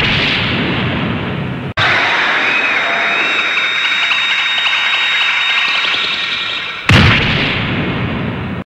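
Anime judo-throw sound effects: a sustained rushing noise, broken by a brief gap about two seconds in, then a sudden loud boom about seven seconds in as a thrown body slams down.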